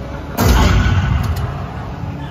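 A pyrotechnic blast from a live stunt show: one loud boom about half a second in, its deep rumble dying away over about a second.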